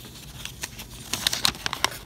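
A folded paper instruction manual being handled, rustling and crackling in a run of short, crisp crackles.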